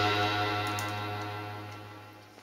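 Grand piano's final chord of the song sustaining and dying away steadily, with a couple of faint clicks about halfway through.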